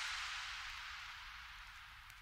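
Faint hiss fading steadily away to near silence: the noise tail at the end of a lo-fi hip hop track.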